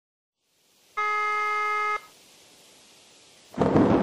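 A telephone ringback tone: one steady beep lasting a second, starting about a second in, over faint hiss, in the single-pitch, one-second-on pattern of the German ringing tone. Near the end a loud rush of noise sets in suddenly.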